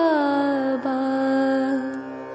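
Devotional mantra chanting: a sung voice slides down onto one long held note over a steady low drone.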